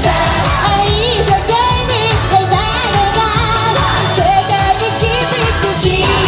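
A female J-pop idol group singing live into microphones over pop backing music with a steady beat.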